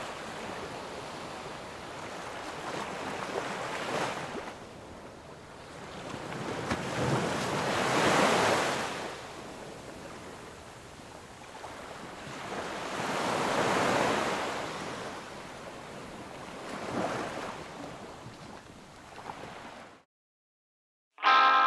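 Surf on a sandy beach: waves washing in and falling back in slow surges, four or so, the loudest about eight seconds in.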